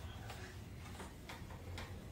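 A sponge wiping a glass pane, making faint, irregular short rubbing clicks about three times a second over a low steady hum.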